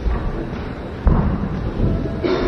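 Dull, heavy thuds from the fighters' feet and kicks on the ring floor, the sharpest about a second in, over a deep rumble.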